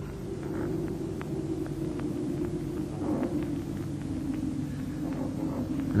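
Faint croaks of common ravens now and then over a steady low hum and hiss.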